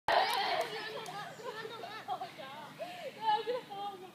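Children's high voices chattering and calling out, several at once, with no clear words.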